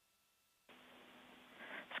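Near silence: a dead-silent gap, then faint steady hiss with a low hum from under a second in, swelling slightly near the end.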